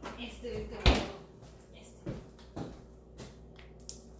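A refrigerator being shut, with one loud thump about a second in, followed by a few lighter knocks and handling sounds.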